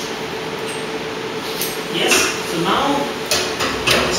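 Metal knocks and clanks from a liquid helium transfer line being handled and pulled out of a cryostat port, twice near the end, over a steady hiss and a low hum.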